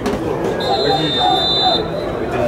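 A single steady, high-pitched whistle blast lasting about a second, starting about half a second in, over the chatter of spectators' voices.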